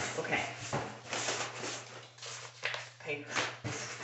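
Rustling and crinkling of packaging as items are handled and pulled from an opened cardboard subscription box, in irregular short bursts with a few light knocks.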